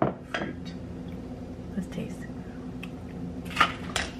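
A few light clinks and knocks of glassware and utensils being handled while a drink is mixed, the sharpest near the end, over a low steady hum.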